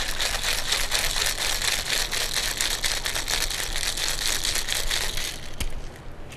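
Ice cubes rattling hard inside a two-piece cocktail shaker, a tin capped with a mixing glass, as a creamy drink is shaken vigorously to make it frothy. The rattle is fast and continuous and stops shortly before the end.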